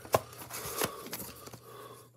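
Plastic VHS cassette and its case being handled: a sharp click just after the start, then scraping and rubbing with another click about a second in, and a few lighter taps.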